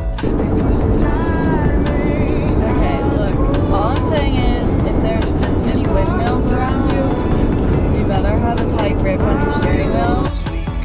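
Steady loud road and engine rumble inside a moving car's cabin. It cuts in abruptly and stops abruptly at the end, with a woman's voice talking over it and music underneath.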